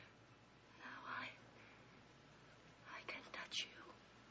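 Quiet, breathy whispering in two short stretches, one about a second in and one near the end, with small mouth clicks in the second.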